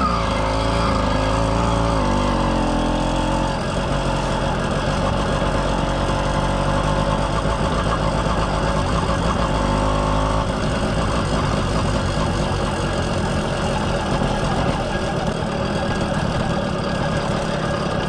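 Two-stroke motorized bicycle engine running under way through an expansion pipe with a silencer. Its pitch falls over the first two seconds and then holds steady, and a low rumble under it drops away about ten seconds in.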